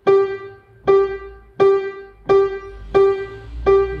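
An upright piano key struck over and over on the same note, about six times at an even pace a little under a second apart, each note ringing and fading before the next. It is a one-key bouncing-ball touch exercise, each stroke a springy bounce off the key.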